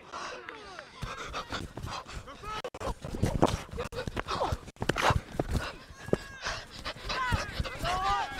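Players calling and shouting to each other across a grass football pitch during play, with scattered short thumps.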